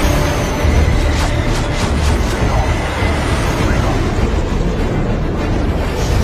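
Loud dramatic film soundtrack music over a steady low rumble, with a few short booming hits about one to two seconds in.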